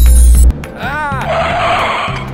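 Loud music cuts off suddenly, then a short rising-and-falling tone and tyres skidding under sudden hard braking of a truck.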